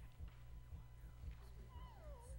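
Near silence: a low steady hum, with one faint, brief falling pitched sound near the end.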